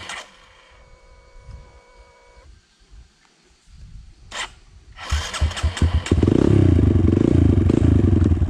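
Dirt bike engine quiet for the first few seconds, then starting up about five seconds in and running loud and steady with rapid firing pulses.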